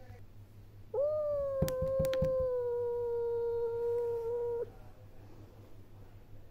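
A domestic cat giving one long, drawn-out yowl lasting several seconds, starting about a second in, its pitch falling slightly. A few sharp clicks come during the first part of the call.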